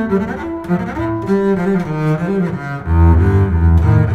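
Solo double bass played with the bow: a quick succession of notes changing pitch every fraction of a second, then about three seconds in a louder low note.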